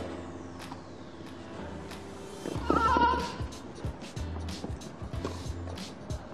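Tennis rally on a grass court: tennis balls struck by rackets again and again, with a player's short, loud cry on a shot about three seconds in, over background music.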